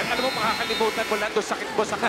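Speech: broadcast commentary over the steady background noise of an arena crowd.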